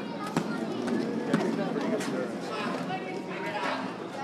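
Indistinct voices of people chatting, carrying in a large hall, with a few sharp knocks in the first half.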